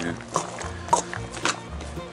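Hands squishing and kneading ground meat and diced onion in a stainless steel bowl, a few soft wet clicks, under steady background music.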